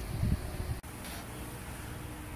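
Steady low background hum of room tone, with a brief dropout just under a second in.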